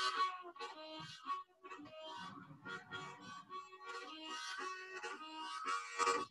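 Harmonica played in short phrases of held notes and chords.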